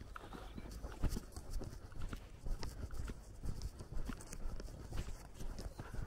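Footsteps of a person walking on an unpaved dirt road, about two steps a second, picked up by a hand-held camera.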